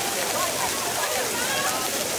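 Steady rush of running and splashing water from water-park features, with many voices chattering and calling over it.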